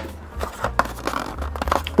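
Cardboard phone box and its insert tray being handled: light rustling with a few small knocks and clicks.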